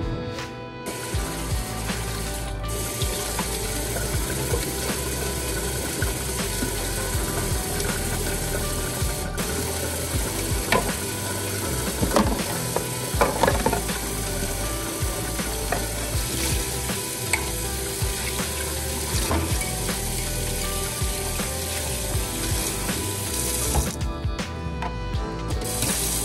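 Kitchen faucet running into a stainless steel sink while dishes are washed by hand: a steady rush of water that starts about a second in, with a few sharper splashes or clinks of dishes in the middle.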